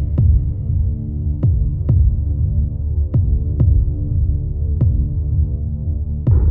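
Trailer sound design under the end credits: a steady low droning hum with a heartbeat-like pulse of deep double thumps, each pair about half a second apart, repeating roughly every one and a half seconds.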